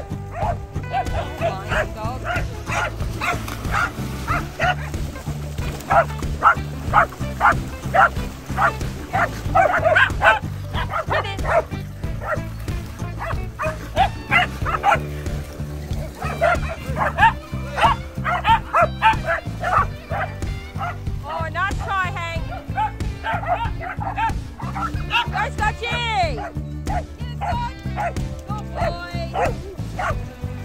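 Several dogs barking over and over in play, short barks in quick runs, with a few higher sliding yelps and whines a little past two-thirds of the way in. Background music with a steady bass line runs underneath.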